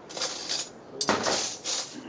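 Large glass bowl of relish set down on a stainless-steel counter: a few light rustles, then a sudden knock and short scraping clatter about a second in.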